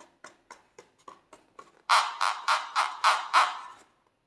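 Fingers rubbing and squeezing a filled latex balloon, giving short rubbery strokes about four a second. The strokes grow much louder about halfway through and stop suddenly near the end.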